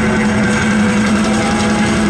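Loud live rock band sound through an arena PA: a steady held low electric-guitar drone, with a few faint gliding higher tones over it.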